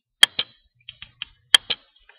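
Computer mouse clicking: two quick double-clicks about a second and a half apart, with a few lighter ticks between them.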